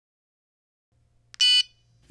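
A single short electronic alert beep from the TIREBOSS 2 tire pressure controller, about a third of a second long, sounding as a new caution alert comes up on its screen.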